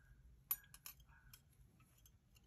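Near silence with a few faint, sharp clicks, the clearest about half a second in, from a metal crochet hook being worked through yarn by hand.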